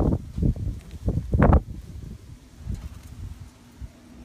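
Rustling and several dull thumps from a hand-held phone microphone being moved about, the loudest about one and a half seconds in, then fading to a faint rustle.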